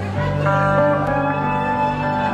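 Solo electric guitar, picked notes entering one after another about half a second and a second in and ringing on together as a chord, as a song intro is begun again.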